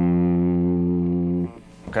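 Electric guitar ringing a single low F, the first fret of the sixth string, held steady and then cut off about a second and a half in.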